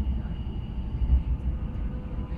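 Inside a WKD electric commuter train running along the track: a steady low rumble of wheels and running gear with a faint, steady high whine above it.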